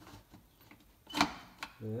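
Steel parts of a Mossberg 535 pump shotgun being fitted as the forearm's action bars are slid back into the receiver: a few faint ticks, then one sharp metallic click a little past a second in and a lighter click shortly after.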